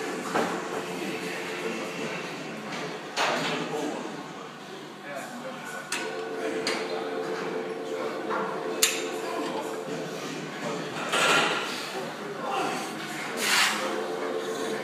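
Gym room ambience: indistinct voices over a steady hum, with a few short noisy bursts and one sharp click about nine seconds in.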